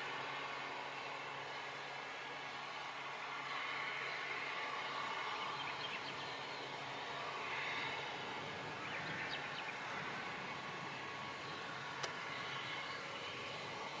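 Steady hum of a quadcopter drone's propellers, several held tones, with a single sharp click near the end.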